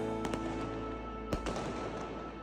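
Diwali fireworks and firecrackers cracking, with one sharp loud crack about a second and a half in, over background music.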